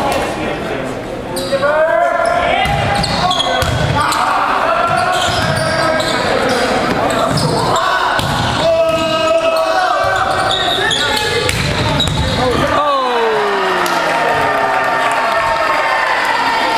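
Indoor volleyball rally in an echoing gymnasium: sneakers squeaking on the hardwood court, sharp ball hits, and players and spectators shouting.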